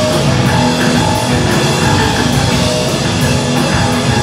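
A live rock band playing loud and heavy: electric guitar, bass guitar and drum kit, with cymbals struck on a steady beat.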